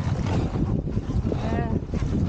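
Dragon boat crew paddling in unison, paddles splashing through the water, under heavy wind rumble on the microphone. A voice calls out briefly near the end.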